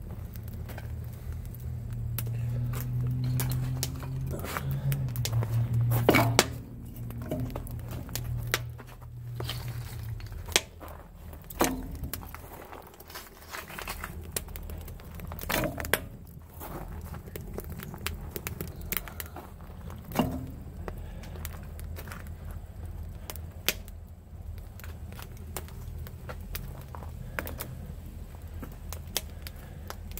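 Scrap-wood fire crackling and popping in a grill-built forge, with several louder knocks as pieces of lumber are set onto the fire. A low steady hum runs under the first third and fades out.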